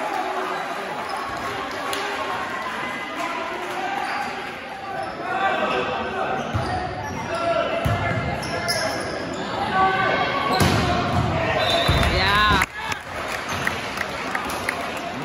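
Voices of players and spectators echoing in a gymnasium during a volleyball rally, with several sharp smacks of the ball being hit. There are a few short high squeals near the end.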